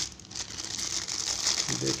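Thin clear polythene bag crinkling as it is handled by hand.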